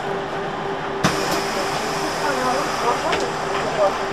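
Interior of a trolleybus standing at a stop with its door open: a steady electrical hum and indistinct passenger voices, with a sharp click about a second in and a couple of light knocks near the end.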